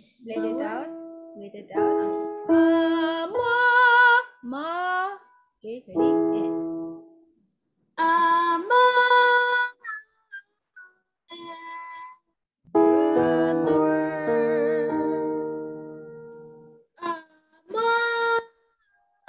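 A woman and a girl singing vocal warm-up phrases on an open vowel over a video call: short held notes with rising slides and some vibrato, broken by pauses. A little past the middle a piano chord rings out and fades over a few seconds.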